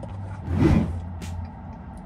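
A short sip of a frozen slush drink through a plastic straw: one noisy slurp that swells about half a second in and fades within a second, over a low steady hum.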